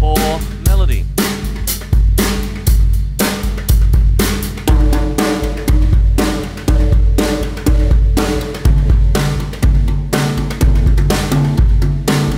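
Drum kit played in a steady groove, a strong bass-drum beat about every 0.8 s, with tom-toms tuned to a scale ringing out pitched notes that carry a melodic line over the beat.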